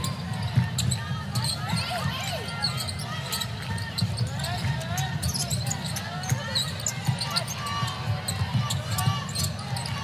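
Basketball bouncing on a hardwood court, with sneakers squeaking in short chirps over the steady murmur of an arena crowd.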